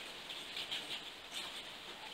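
Faint sipping and mouth sounds of whisky being tasted from a glass, a few small wet clicks.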